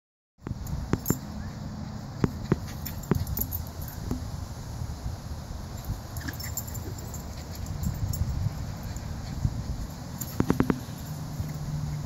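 Two small dogs romping and chasing each other on grass, heard over a steady low rumble, with scattered sharp clicks and a quick run of four clicks near the end.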